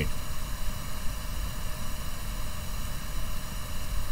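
Steady background noise in a pause between sentences: a low hum or rumble with a faint hiss, with no distinct events.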